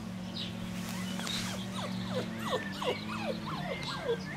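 Five-week-old Bouvier des Flandres puppies yelping and whining as they play-fight: from about two seconds in, a quick run of short cries, each falling in pitch. A steady low hum runs underneath.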